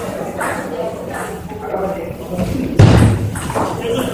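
Table tennis rally in a large hall: short sharp clicks of the ball, with one loud thump just before three seconds in, over background chatter.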